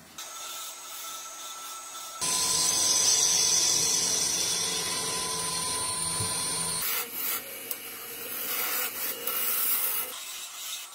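Wood lathe spinning a wooden workpiece while a hand-held gouge cuts into it, a steady scraping cut with a faint whine. The cut gets much louder about two seconds in and turns patchier and uneven about seven seconds in.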